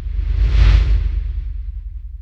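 A whoosh sound effect that swells to a peak less than a second in and then fades, over a deep rumble that dies away slowly.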